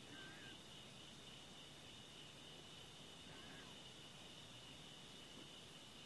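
Near silence under a faint, steady high-pitched insect trill, with two brief faint chirps, one just after the start and one about three seconds in.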